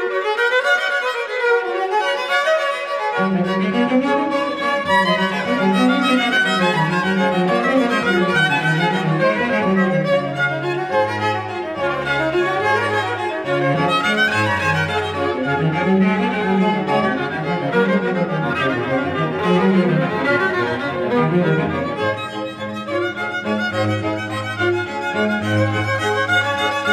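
A string ensemble of violins and cello playing a piece, the violins carrying the melody. The cello's low bass line comes in about three seconds in.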